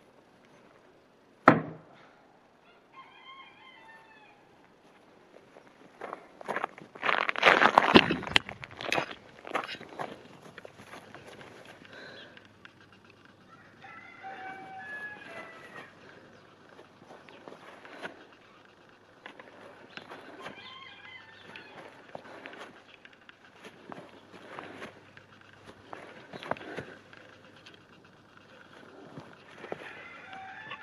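A single sharp knock about one and a half seconds in, as a thrown blade strikes the wooden target, then chickens clucking off and on in the background, with a spell of loud rustling and handling noise a quarter of the way through.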